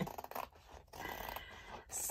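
Scissors cutting through the edge of a diamond painting canvas: a few short snips with the blades rasping through the stiff canvas.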